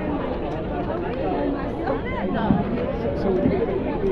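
Crowd chatter: many people talking at once close by, with one voice standing out about two seconds in.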